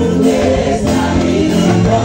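Gospel music with a congregation singing together in chorus over steady musical accompaniment.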